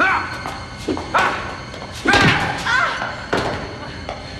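Short grunts and cries from a person's voice, falling in pitch, mixed with heavy thuds and a slam, over a music score.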